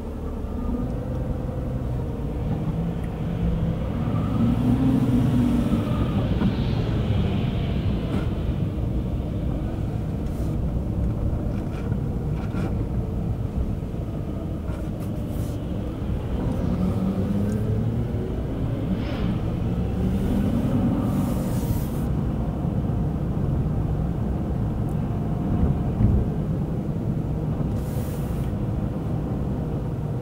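Car engine and road noise heard from inside the cabin while driving. The engine note rises and falls twice as the car speeds up and slows, and there are a few short clicks.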